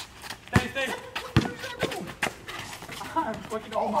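A basketball dribbled on a concrete driveway: a handful of sharp bounces, unevenly spaced, with players' voices in the background and an exclaimed "oh, my" at the end.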